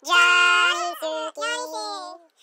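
A high-pitched voice singing a short phrase of held notes, some sliding up or down between pitches, with brief breaks between notes.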